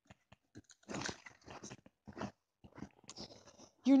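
Picture-book page being turned: a few soft paper rustles and light crinkles and clicks, loudest about a second in.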